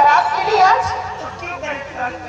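Speech only: actors' stage dialogue spoken into microphones.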